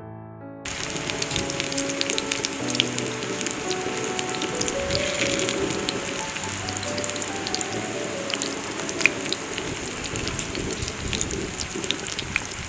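Batter-coated raw banana slices frying in hot oil in a clay pan, a steady sizzle with many sharp crackles. It starts suddenly less than a second in, just after a few notes of piano music.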